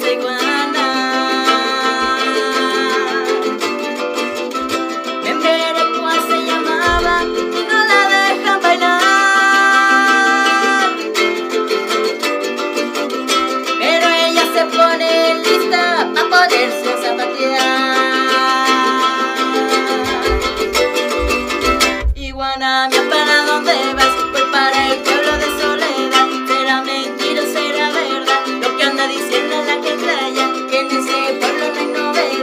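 A woman singing a lively song while strumming a small, ukulele-sized guitar-like instrument, with a steady strum under the sung melody.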